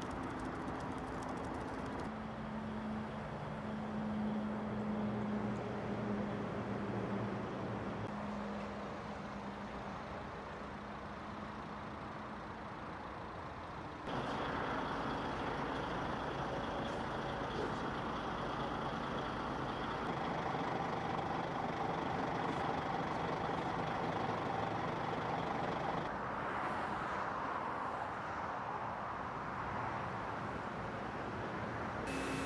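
Steady motorway traffic noise with a vehicle engine running. A low engine hum in the first half gives way to a brighter traffic rush about halfway through.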